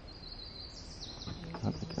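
A songbird singing over faint outdoor background: a thin high whistle, then a quick run of high, down-slurred notes from under a second in.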